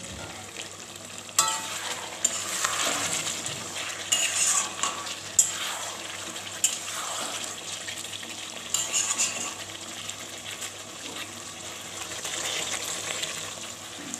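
Chicken and potato curry sizzling as it is fried down in a metal pan, with a spatula stirring and scraping through it and now and then clinking against the pan.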